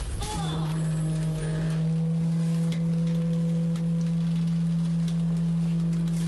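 Garbage truck running with a steady low hum that starts about half a second in, with a few faint clicks over it.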